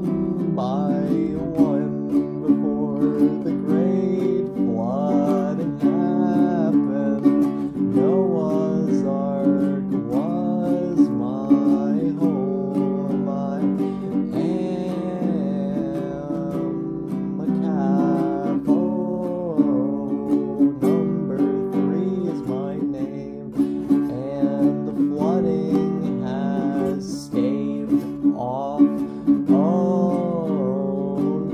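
Folk-punk song: an acoustic guitar strummed steadily, with a melody line above it that bends up and down in pitch.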